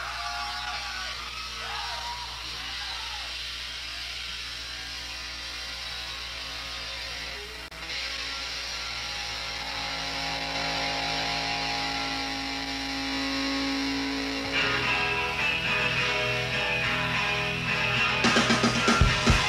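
Electric guitar playing sustained, ringing notes with some sliding pitch through the amplifier, over a steady low hum. About three-quarters of the way through it thickens into a fuller chord, just before the band comes in.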